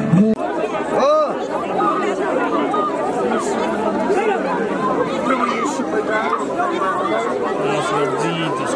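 Many people speaking at once in a close crowd, a dense babble of overlapping voices, as music stops just at the start.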